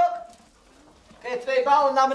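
A man's voice calling out loudly twice: a short call at the start, then a longer drawn-out call in the second half.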